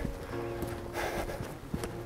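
Footsteps on a dirt and gravel track: a few irregular steps over a faint steady tone.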